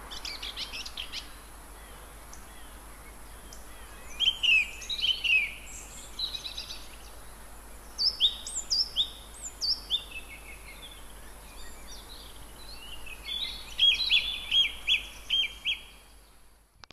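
Song thrush singing: short whistled phrases, each repeated, including a falling note given three times and a quick note repeated about six times near the end.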